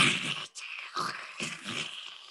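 A harsh hissing, scratching noise in a few rough spurts, standing in for the sound of an early electric carbon arc lamp. It fades toward the end.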